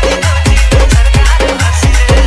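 Odia DJ remix playing: loud electronic dance music with a heavy bass line and drum hits about five times a second.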